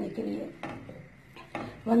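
Wooden spatula stirring milk in a steel saucepan, with faint knocks of the spatula against the pan about half a second and a second and a half in.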